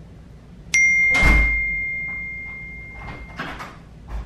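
A single bright chime, struck once just under a second in and ringing as it fades over about two and a half seconds, with a dull thump just after it strikes.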